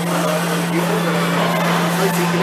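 School background noise: a steady low drone holding one pitch, under the faint chatter of distant voices.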